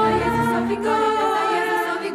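Mixed choir singing a Polish Christmas carol in held notes, with a small ensemble of strings, accordion and clarinet beneath and a double bass underneath.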